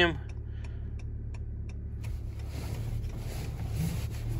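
2018 Honda Accord running with a steady low hum heard inside the cabin as it reverses slowly, with a quick run of faint ticks, about five a second, over the first couple of seconds and a soft hiss coming in about halfway.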